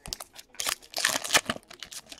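Foil trading-card pack wrapper crinkling as it is handled, a quick run of rustles and crackles that is densest about a second in.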